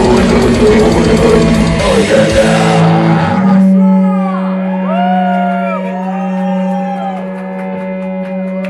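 Metal band playing loud with drums and distorted electric guitar, then stopping about three and a half seconds in. A single low distorted guitar note is left ringing, with rising and falling feedback squeals arching over it.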